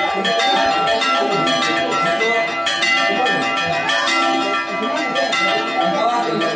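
Church bells of a Greek Orthodox bell tower rung by hand in a continuous peal. Bells of different pitches are struck in quick succession, their tones ringing on and overlapping.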